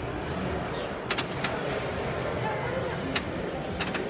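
Wheel of Fortune pinball machine in play: a handful of sharp clacks from flippers and ball strikes, two of them close together near the end, over the steady din of a room full of arcade machines.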